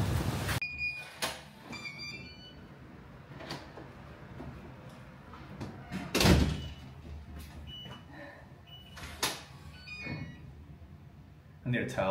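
An apartment's wooden front door being handled: scattered clicks and knocks, with one louder thud about six seconds in. A few short high beeps come early on.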